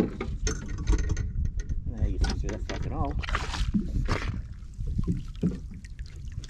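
Water sloshing and splashing against a landing net as a caught squid is lifted from the sea beside a small boat, with a steady low rumble underneath and a brief murmur of a voice about halfway through.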